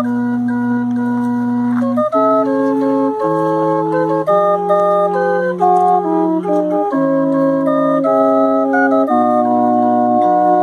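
A hand-cranked 29-note concert barrel organ with wooden pipes playing a slow tune from punched cardboard music. Held bass notes and chords change every second or two under a melody line.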